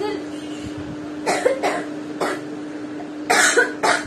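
A woman coughing into her hand: a few short, separate coughs, then a louder run of coughs near the end. It is a cough she has had all day.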